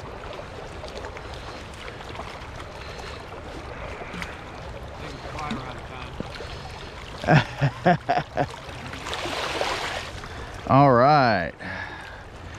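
Steady rush of a shallow trout stream flowing past a wading angler. About seven seconds in come a few short, sharp sounds, and around nine seconds a second-long splashy hiss as a hooked trout is played toward the net. Near the end a man's voice calls out in a long, wavering sound.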